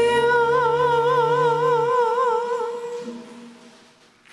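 The closing chord of a hymn, held with a regular waver; the low notes drop out about a second and two seconds in, and the chord fades away over the last couple of seconds.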